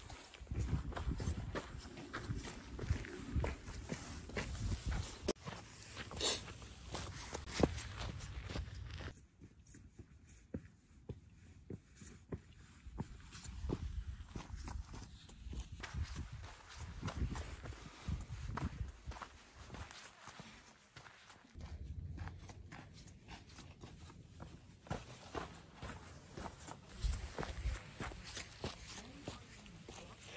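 Footsteps of a hiker walking on a dirt and rock trail, an irregular run of steps over a low rumble on the microphone, with a quieter stretch partway through.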